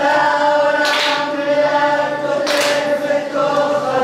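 A group of voices singing together, unaccompanied, in long held notes.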